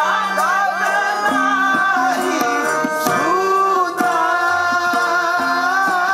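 Sikh kirtan: voices singing a devotional hymn over held harmonium chords, with tabla strokes keeping the rhythm.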